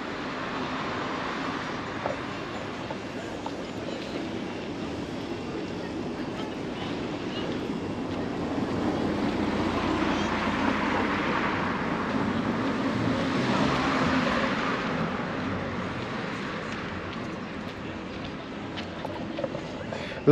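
Outdoor roadside noise, a steady rushing haze of wind and passing traffic that grows louder from about eight seconds in and eases off again after about fifteen seconds.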